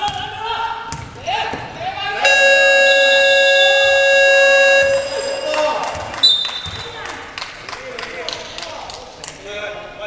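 A basketball gym buzzer sounds one long, loud, steady blare of about two and a half seconds, a couple of seconds in. A short high whistle blast follows about a second later, then basketballs bounce on the hardwood floor among players' voices, echoing in the large hall.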